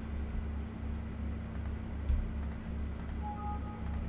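A few computer mouse clicks and keystrokes over a steady low electrical hum. Near the end comes a short two-note electronic chime, a Windows alert sounding as a 'file already exists, replace it?' dialog pops up.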